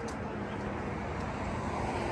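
Steady hum of road traffic from a multi-lane road, an even background wash with no distinct events.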